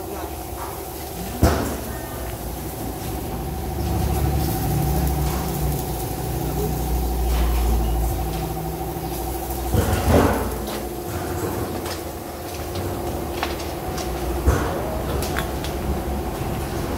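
Workshop ambience: a steady machine hum, a heavier low rumble a few seconds in, and three sharp knocks spread through.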